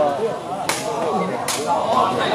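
Two sharp knocks of a sepak takraw ball being struck, a little under a second apart, over the chatter of a crowd of spectators.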